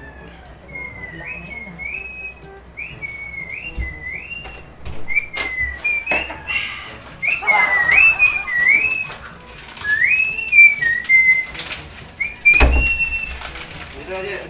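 A person whistling a playful tune in short notes that slide up and down, louder in the second half. A few knocks break in, the heaviest about two seconds before the end.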